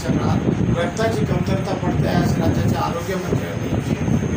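A man speaking Marathi without a pause, over steady low background noise.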